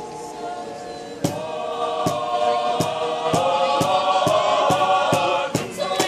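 A mixed group of voices singing together outdoors, growing louder about a second in, when a steady beat of sharp claps, about three a second, joins the singing.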